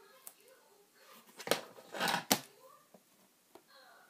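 Objects being handled: two sharp clicks with a rustle between them, starting about a second and a half in, over faint voices in the background.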